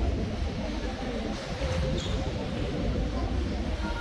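Background murmur of distant voices over a steady low rumble.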